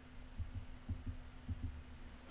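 Faint, soft low thumps about every half second over a steady low hum.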